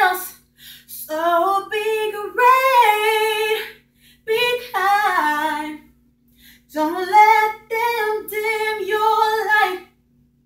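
A young woman singing R&B a cappella: three long melodic phrases with bending vocal runs, separated by short breaths and pauses.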